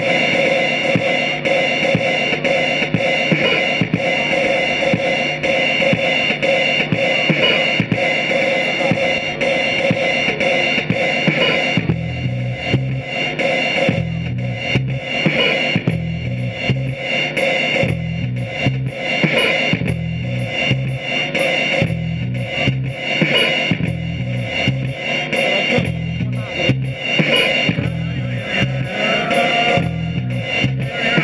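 A live band playing instrumental music on keyboards, drums and an electric guitar. Sustained tones with fast, light ticking open the passage, and about twelve seconds in a repeating low bass line comes in.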